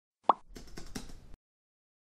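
Animated-intro sound effects: a short pop rising in pitch, then under a second of quick keyboard-typing clicks as the web address fills the search box.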